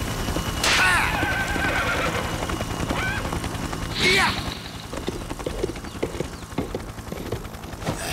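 A horse whinnying: a long wavering whinny about a second in, a short one near three seconds and a loud falling one at four seconds. Its hooves then clop in a run of short knocks through the second half.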